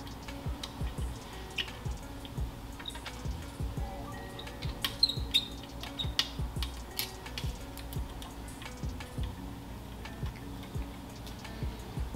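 Soft background music, with scattered small metallic clicks and ticks from a hex key working the screws that hold a Nikon TS100 microscope's trinocular head.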